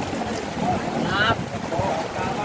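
Steady heavy rain falling on a tarp shelter and wet ground, with water pouring off the tarp's edge. A voice calls out about a second in.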